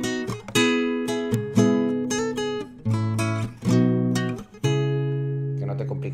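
Classical guitar strumming chords: six strokes, each left to ring, the last one held and fading out near the end.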